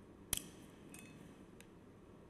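A sharp click about a third of a second in, then two fainter ticks, from something handled at the altar, against quiet church room tone.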